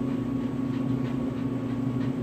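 A steady low mechanical hum, even in level, with no other event.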